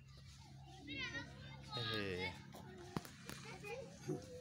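Faint background voices, high-pitched like children calling: two short wavering calls about one and two seconds in, with a sharp click a little before the three-second mark.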